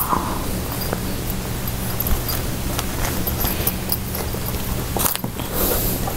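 Packaging rustling and crinkling as an item is dug out of the box and unwrapped, with a few sharper crackles near the end, over a steady low electrical hum.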